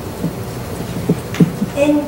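Steady hiss and rumble of a meeting room's background noise on the recording, with a few soft knocks in the pause; a child's voice comes back in near the end.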